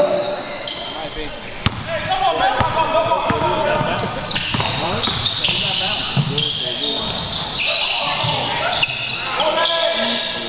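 Basketball game play on a hardwood gym court: a ball bouncing and sneakers squeaking in short high chirps, busiest in the second half, with players' voices calling out indistinctly in an echoing gym.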